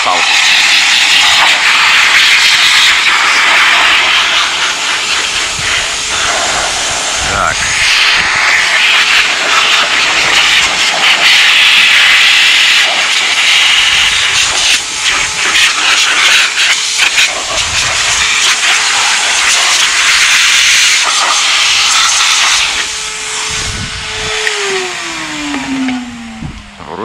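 A vacuum cleaner run in blowing mode, sending a steady hissing jet of air through a plastic-bottle nozzle into a computer case to blow out dust. Near the end the motor is switched off and its whine falls steadily in pitch as it spins down.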